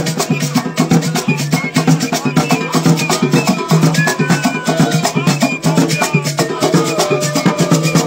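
Drum and percussion ensemble playing a fast, dense, steady rhythm, with rattling shaker-like strokes over deeper drum beats.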